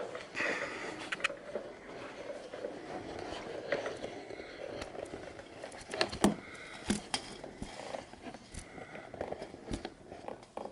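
Handling noise of a camera being carried and set in place: rustling with scattered knocks and clicks, a few sharper ones in the second half.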